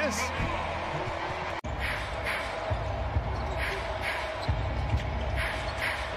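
Game sound of a basketball bouncing on a hardwood court over a steady hum in a sparsely filled arena. The sound drops out suddenly for an instant about one and a half seconds in, at an edit cut, and the ball's thuds repeat through the second half.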